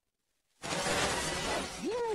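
Cartoon soundtrack effect: near silence, then a sudden crash about half a second in that carries on as a steady, noisy rush. A short rising voice cry comes near the end.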